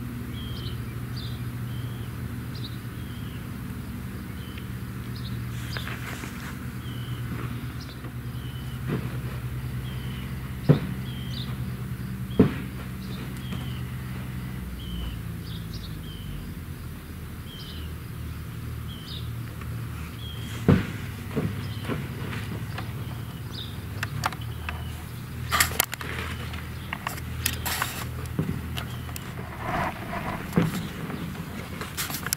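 A short high chirp repeating about once a second over a low steady hum that changes about halfway through. A few sharp knocks come through, bunched together near the end.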